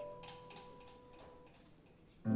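A near-silent pause in a live band's playing: a lingering note fades away, with a few faint light clicks over the quiet.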